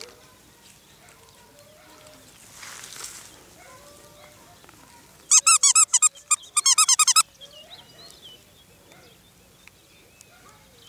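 A squeaky plush dog toy squeaked rapidly as a puppy chews it: about a dozen quick, loud, high squeaks in two bursts a little past halfway.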